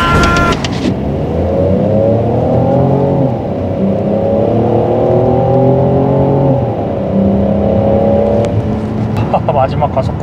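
Peugeot 5008's 1.2-litre three-cylinder turbo petrol engine under hard acceleration, heard from inside the cabin. The revs climb steadily, drop with a gearbox upshift about three seconds in, climb again, and drop with a second upshift near seven seconds. They then pull on more evenly before easing off near the end.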